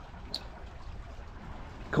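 Steady wash of water and wind around a sailboat under way on open water, with one short tick about a third of a second in.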